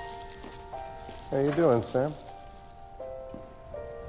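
Slow, soft piano music from a film score, its notes held and changing every second or so, with a man's voice saying one word about a second and a half in.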